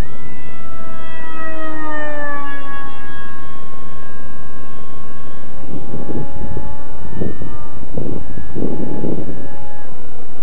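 Brushless electric motor (KD KA450H 3200kv) spinning a 6x5.5 APC pusher propeller on a flying foam RC jet: a loud, steady whine whose pitch slides down over the first few seconds, holds, then drops sharply near the end as the throttle comes back. Several gusts of rushing wind noise come through in the second half.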